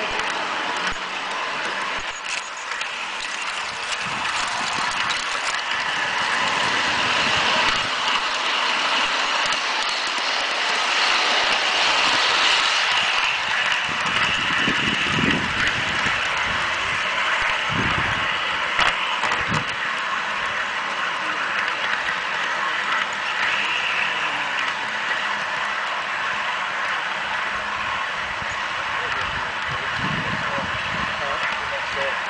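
Garden-railway model train running along its track, heard close up from the train itself: a steady rattle of wheels and running gear, with a few low thumps a little past halfway.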